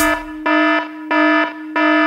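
An alarm-like buzzer tone in an electronic dance track, with the drum beat dropped out. It swells into three louder pulses with a softer steady tone between them.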